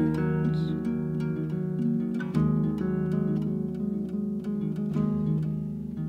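Fingerpicked steel-string acoustic guitar playing an instrumental passage of ringing, sustained notes, with a new chord plucked a little over two seconds in.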